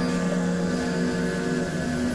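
Experimental electronic drone music: sustained synthesizer tones, several steady low pitches layered over a flickering low rumble.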